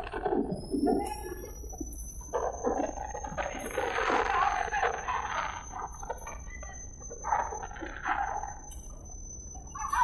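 Several people shouting loudly over one another in agitated bursts, with a thin steady high whine that rises slightly in pitch underneath.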